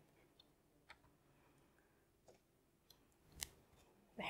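Near silence: room tone in a small room, with a few faint clicks, the clearest one about three and a half seconds in.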